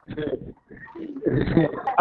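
Speech only: a man's indistinct voice, with a short break near the first half-second.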